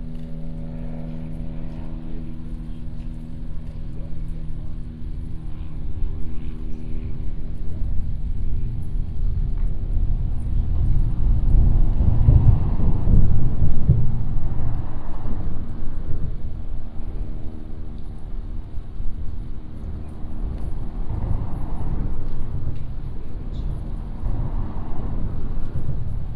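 Engine noise: a steady pitched drone through roughly the first half, over a low rumble that swells loudest a little past the middle and again more weakly near the end, like traffic passing.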